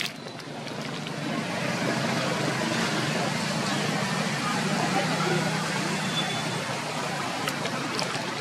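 A motor vehicle passing by: a steady engine-and-road rumble that swells over the first few seconds and eases off near the end.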